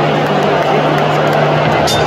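Loud roar of a large stadium crowd cheering and shouting, over a steady low hum, with a sharp tick near the end.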